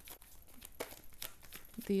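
A tarot deck being shuffled by hand: a run of soft, papery card flicks and slides, a few each second.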